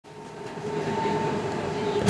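Steady rumble and constant hum inside a moving train carriage, fading up over the first second.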